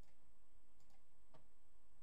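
Two or three faint clicks of a computer mouse over a low, steady background hiss.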